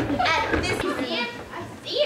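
Several children's voices calling out and laughing, high-pitched and excited, in short overlapping bursts.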